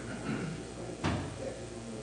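A single sharp knock about a second in, over faint murmured voices in the room.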